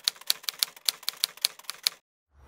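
Typewriter keys clacking in quick, even succession, about eight keystrokes a second: a typing sound effect played as the on-screen text types itself out.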